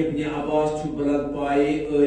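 A man chanting a line of verse in long, drawn-out notes.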